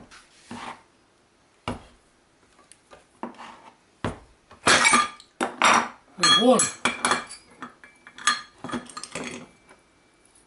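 Steel clinks, knocks and scrapes from a motorcycle rear brake drum and sprocket being worked on for bearing removal. There are single knocks at the start and just under two seconds in, then a busy run of rattling and clinking through the second half, with one brief wavering ring.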